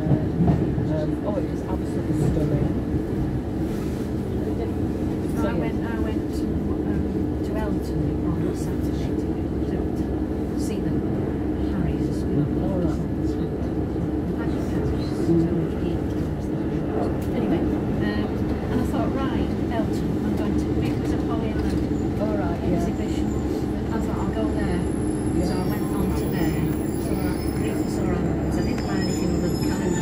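Class 150 Sprinter diesel multiple unit running along the line, heard from inside the carriage: a steady low drone from the underfloor diesel engine and wheels on rail, with scattered faint clicks. Thin high-pitched tones come in over the last few seconds.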